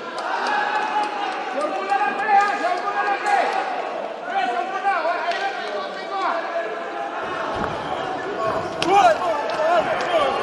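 Several voices calling and shouting over one another in a large echoing hall, with a few sharp knocks.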